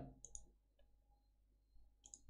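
Near silence, with two faint computer clicks close together about a quarter of a second in.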